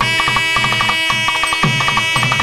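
Indian temple instrumental music: a melody instrument holds long, steady notes over quick, regular hand-drum strokes, about four deep strokes a second with lighter taps between them.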